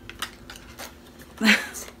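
Lip gloss cardboard box being pulled open by hand, with light scrapes and clicks of the card. About halfway through, a short burst of a woman's voice is the loudest sound.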